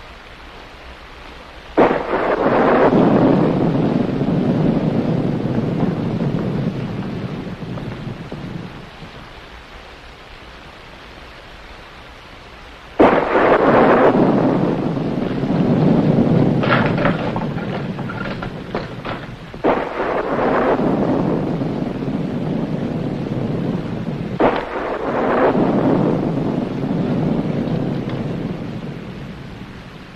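Thunder and rain from a 1940s film soundtrack. Four sudden thunderclaps, the first about two seconds in and the last a few seconds before the end, each rolling away over several seconds, over a steady hiss of rain.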